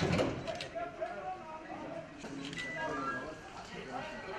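Several men's voices talking indistinctly, with a short loud clatter right at the start.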